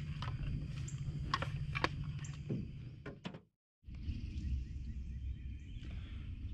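A wooden boat paddle being handled, knocking lightly against the jon boat several times over a steady low hum. The sound cuts out completely for a moment about three and a half seconds in, then steady outdoor background resumes.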